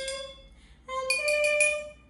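Water-tuned drinking glasses struck with a chopstick. One glass's ringing note dies away. About a second in, the next, higher-pitched glass of the scale is tapped in quick repeated strokes and rings.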